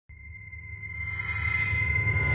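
Electronic intro sound effect: a rising drone with steady high tones over a low hum, swelling steadily louder.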